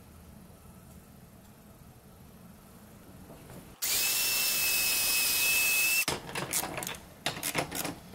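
A compact handheld electric power tool runs for about two seconds with a steady high whine, starting about four seconds in and stopping suddenly. Afterwards come several short knocks and scrapes of wooden parts being handled.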